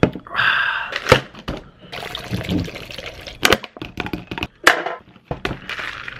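Liquid sounds from a can of carbonated energy drink being handled and drunk from, with a short hiss near the start and a few sharp clicks and knocks of the can.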